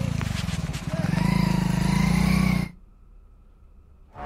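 A motor vehicle engine running close by, with a fast, even pulsing, under people's voices. It cuts off abruptly a little under three seconds in.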